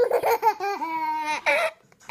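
Toddler laughing: about a second and a half of laughter, then one short laugh.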